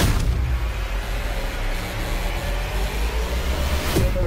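Cinematic trailer sound design: a heavy boom at the start, then a sustained deep rumble that swells into another hit at the title card.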